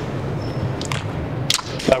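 A jump rope slapping a hardwood gym floor as someone skips: three sharp slaps, the last the loudest, over a steady low background hum.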